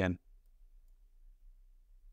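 Near silence with a low steady hum and a few faint clicks of a computer mouse, after the last spoken word.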